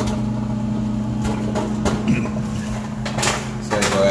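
Microwave oven running with a steady low hum while a bag of microwave popcorn heats inside, with a few scattered pops of kernels bursting.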